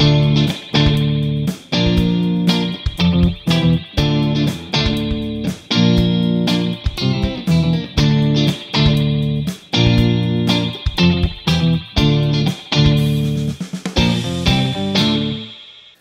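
Fender Stratocaster electric guitar with single-coil pickups, played through an Orange TH30 amp and the Eventide Space pedal's spring reverb algorithm, set for a moderate, not-too-wet spring reverb with a single digital spring. A run of picked chords and notes, the last chord fading out near the end.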